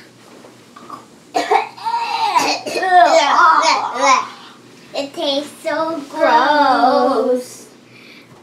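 A young girl singing without clear words in two long, wavering phrases, the first starting about a second and a half in and the second about five seconds in.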